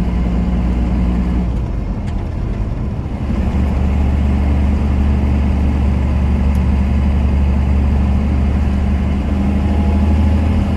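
5.9 L 12-valve Cummins inline-six turbo diesel of a 1993 Dodge Ram 250 running under way, heard from the cab. Its note dips about two to three seconds in, as the five-speed manual is shifted into the next gear, and then settles into a deeper, steady drone.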